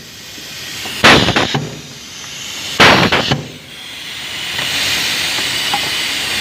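Pneumatic cable insulation stripping machine: two sharp bursts of compressed air exhausting, about a second in and near the three-second mark, each lasting about half a second. Then a steady air hiss builds and holds.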